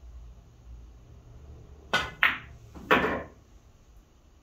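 A pool shot: the cue tip strikes the cue ball about two seconds in, then a sharp ringing click of the cue ball hitting an object ball. About a second later comes a louder knock with a short rattle as a ball hits a cushion or drops into a pocket.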